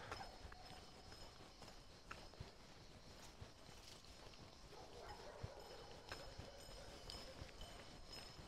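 Near silence with faint footsteps on an asphalt road.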